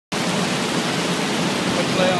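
Steady loud rushing noise with a low hum underneath: the background din of an oil rig floor.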